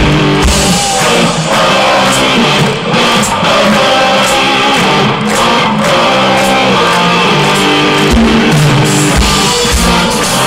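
Live rock band playing loudly, with electric guitar and drums, recorded on a small camera whose sound is overloaded and distorted.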